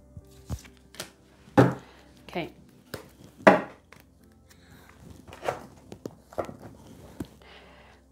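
Tarot cards being handled and laid on a table: scattered soft taps and card clicks. A woman's short wordless vocal sounds, falling in pitch, come four or five times, over faint background music.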